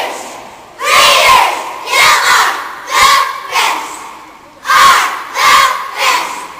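A squad of young cheerleaders shouting a cheer together in loud, rhythmic bursts, about one a second.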